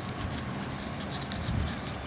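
Flat plastic craft wire (koodai wire) rubbing and ticking against itself as the strands are pulled through a box knot by hand. There are a few light clicks and a soft low handling bump about a second and a half in, over a steady hiss.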